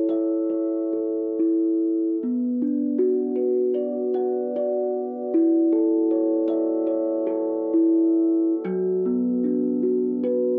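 Steel tongue drum struck with felt mallets, notes played one after another about two to three a second and left ringing together, so that they blend into chords. The chords alternate every couple of seconds, between A major and B minor.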